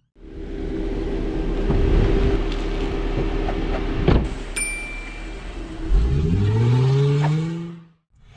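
A car engine running steadily, then revving up with a rising pitch near the end before cutting off suddenly. About halfway through there is a sharp click and then a bright bell-like chime.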